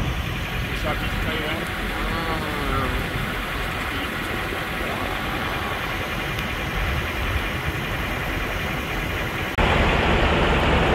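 A vehicle engine idling steadily nearby, a constant low rumble, getting louder near the end.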